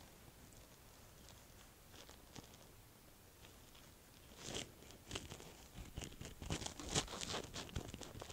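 Near silence for the first half. Then, from about halfway, a run of soft, irregular dabbing and rustling taps as foundation is blended onto the face with fingertips and a makeup sponge.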